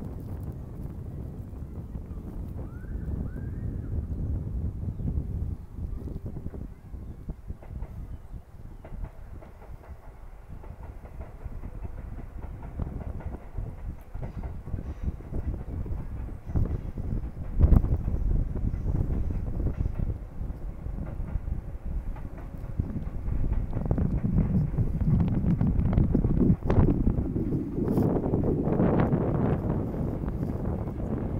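Wind buffeting the microphone: a low, uneven rumble that rises and falls in gusts, with one sharp blast about 18 seconds in and stronger gusts over the last several seconds. Scattered light knocks from footsteps run through it.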